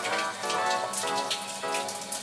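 Water from a wall tap splashing steadily as hands are washed under it, with background music of short repeated notes over it.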